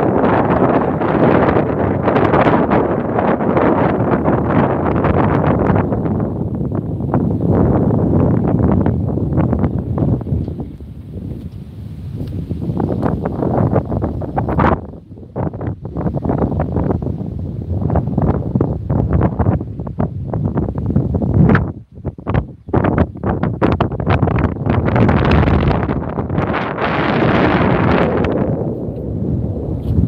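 Strong wind buffeting the microphone in gusts: a loud, uneven rush of wind noise that drops away briefly about halfway through and again a few seconds later.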